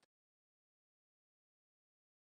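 Silence: the sound track is gated to digital silence between remarks.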